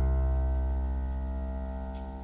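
A sustained piano chord, the song's closing chord, ringing on and slowly fading away.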